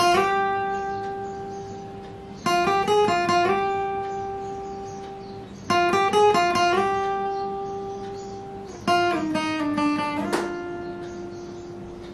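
Steel-string acoustic guitar playing a slow single-note melody on the B string in four short phrases, each ending on a long ringing note that fades away. The notes are joined by slides, and near the end one note slides down before a sharp new note rings out.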